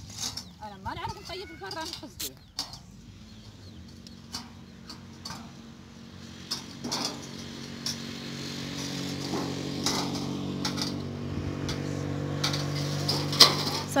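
An engine running at a steady pitch, coming in about halfway through and growing gradually louder, with scattered clicks and faint voices early on.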